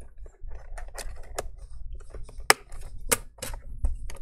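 A thin pry tool scraping and clicking in the seam of an Asus ROG G513QY laptop's plastic bottom cover as it is worked open: an uneven series of sharp clicks, the loudest two about two and a half and three seconds in.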